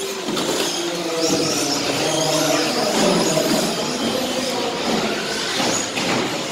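Radio-controlled 2WD short course cars racing round an indoor track, their motors whining up and down with throttle as they lap.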